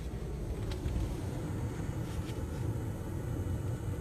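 Low, steady rumble of an idling vehicle engine, with a few faint clicks.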